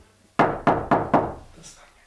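Four quick knocks on a wooden door, evenly spaced about a quarter second apart, a signal from someone outside asking to come in.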